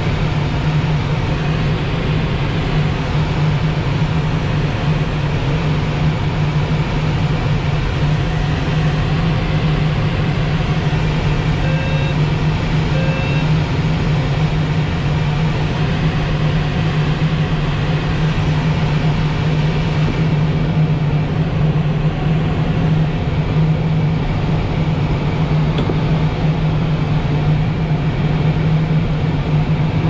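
Steady rush of airflow past a Blaník glider's canopy and over the camera in gliding flight, with a constant low drone under it. Two short beeps sound about twelve seconds in.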